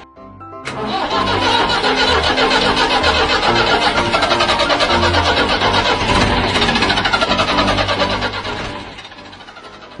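Perkins diesel engine cranking and labouring to start on a cold morning, with music playing over it; the sound fades down near the end.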